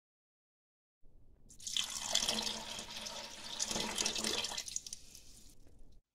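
Water pouring, starting about a second in and stopping shortly before the end.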